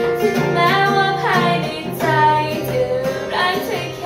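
A girl singing a melody to acoustic guitar accompaniment.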